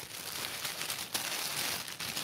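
Packaging crinkling and rustling in irregular bursts as a gift is handled and unwrapped.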